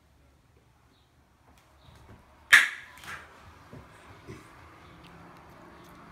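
A single very loud tongue click, a sharp smack made by snapping the tongue off the roof of the mouth, about two and a half seconds in, followed by a short ring of room echo. It reads 94 decibels on a sound meter.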